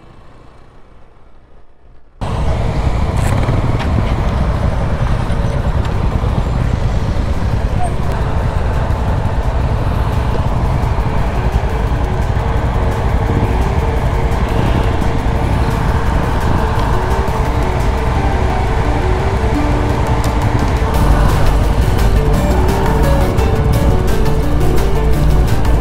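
Background music with a loud motorcycle ride sound mixed under it: engine and wind rumble that cuts in abruptly about two seconds in and runs on under the melody.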